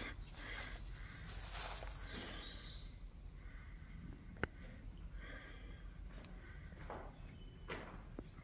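Faint footsteps scuffing over dead leaves and debris on a concrete floor, with one sharp click or snap about four and a half seconds in.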